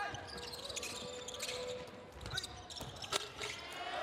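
Basketball bouncing on a hardwood court during live play: a few separate bounces, the sharpest a little after three seconds in, over faint arena background.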